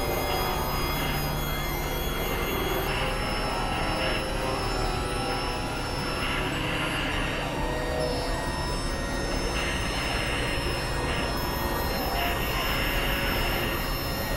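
Experimental electronic noise music from synthesizers: a dense, steady wall of noise with sustained high tones, some slightly wavering, and a band of hiss that swells and fades every second or two.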